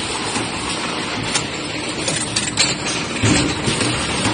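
Automatic vacuum lug-lid capping machine running: a steady mechanical clatter from the jar conveyor and capping heads, with a few sharp clicks.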